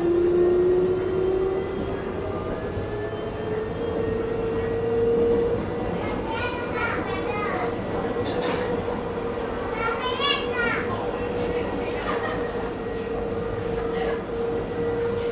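Light rail tram heard from the driver's cab, its traction motors whining in a tone that rises in pitch as the tram accelerates for about the first five seconds, then holds steady at cruising speed over a rumble of wheels on rail. Brief background voices come through twice in the middle.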